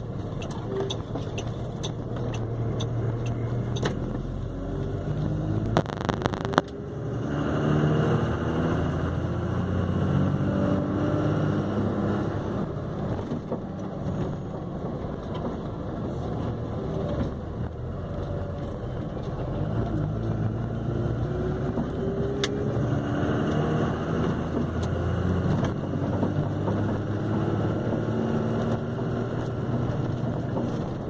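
Truck's diesel engine heard from inside the cab, pulling away and revving up through the gears several times, its pitch climbing and then dropping at each shift. A few sharp knocks come about six seconds in.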